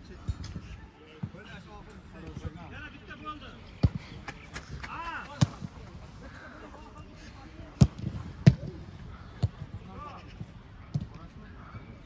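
Footballs being kicked during training: a string of sharp, irregularly spaced thuds, the loudest two close together about eight seconds in. Shouts of players are heard from a distance between the kicks.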